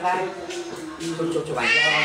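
A small child crying: a long, steady whine that rises into a high wail near the end.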